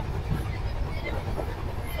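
Steady low rumble of a passenger train running on the track, heard from inside a sleeper coach at its open door end.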